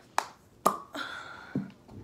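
Three sharp clicks or taps, the second the loudest, with a short faint tone between the second and third.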